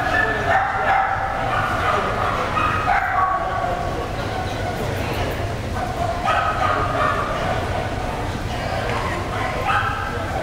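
A dog whining and yipping in high, drawn-out cries that come again and again, at the start, about three seconds in, around six seconds in and near the end.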